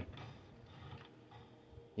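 Faint rolling and light handling noise of a 1:24 scale diecast truck pushed by hand across a wooden desk, a few soft ticks and rubs.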